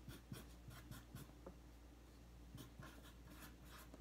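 Faint scratching strokes of a marker pen writing, in two spells of quick strokes with a short pause in the middle.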